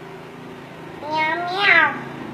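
A toddler imitating a cat's meow: one drawn-out call about a second in, rising in pitch and then falling.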